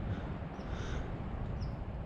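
Quiet woodland ambience: a steady low rumble of wind on the microphone, with a couple of faint, short high chirps.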